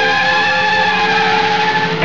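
Music from the film's score: a loud chord of several steady tones held without a break.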